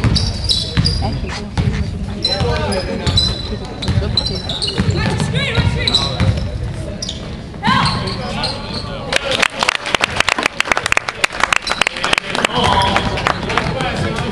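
Basketball game sounds in a large echoing gym: spectators' voices and shouts over a ball being dribbled on the hardwood floor. About nine seconds in comes a dense run of rapid sharp smacks lasting about three seconds.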